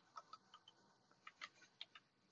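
Faint computer keyboard typing: a handful of scattered, short key clicks.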